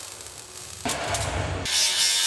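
Metalworking noise from welding and angle grinding on steel: a rough rasp about a second in, then a bright, harsh hiss near the end as the grinder bites.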